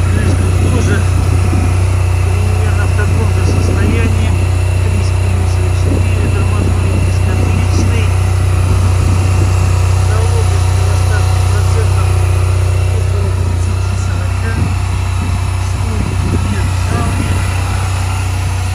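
Honda Silver Wing 400 scooter's parallel-twin engine idling steadily, a loud, even low hum close to the microphone.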